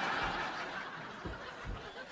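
Studio audience laughing after a punchline, the laughter fading away over the two seconds, with a few soft low thumps.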